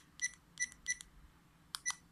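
Rollei Actioncam 425's button beeps: short, high electronic beeps, one for each button press while stepping through the camera's settings menu. There is a quick run of three, then two close together near the end.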